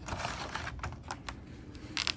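Light, irregular clicks and taps of a cardboard Funko Pop box and its clear plastic insert being handled as the figure is pulled out of the box.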